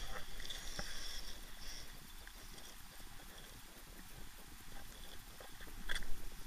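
Radio-controlled rock crawler working over boulders: its electric motor whines in short spurts of throttle, mostly in the first two seconds, while its tyres scrabble and click on the rock. A sharp knock just before the end is the loudest sound.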